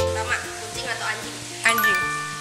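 Background music with sustained notes runs under a brief voice. Near the end a bright chime-like ding sounds suddenly and rings on.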